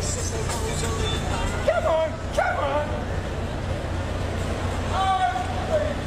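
Steady low city traffic rumble with short raised voices, a couple of brief shouts about two seconds in and again near the end.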